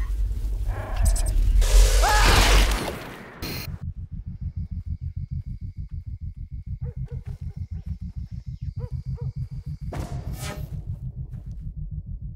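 Film trailer sound design. It opens with a loud rumbling whoosh and a short rising cry for about three seconds. A fast, low, even pulsing throb follows, several beats a second, under a faint thin whine and a few soft chirps, and another whoosh breaks in near the end.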